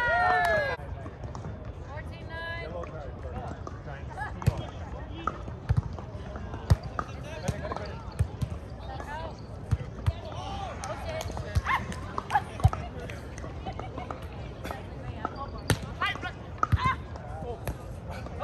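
Volleyball rally on sand: a series of sharp slaps, a couple of seconds apart, as hands and forearms strike the ball, with players' short shouts and calls between the hits.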